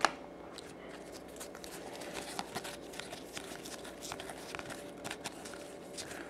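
Baseball trading cards being handled and sorted by hand: scattered soft clicks and rustles, over a faint steady hum.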